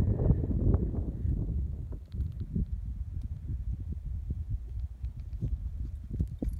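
Wind buffeting the microphone as a low rumble, heaviest in the first two seconds, with scattered light knocks and scuffs throughout.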